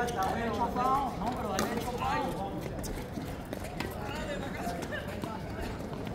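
Indistinct men's voices talking, strongest in the first two seconds and again briefly near the end, with a few short clicks scattered through.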